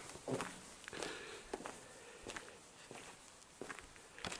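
Faint footsteps of a person walking outdoors across a yard: short, soft steps spaced irregularly about every half second to second over a low hiss.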